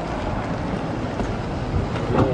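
Car engine idling, a steady low hum, under general outdoor noise.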